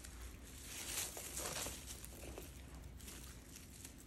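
Faint rustling of hands handling and wrapping plastic twine, with a few soft swells about a second in and again a little later.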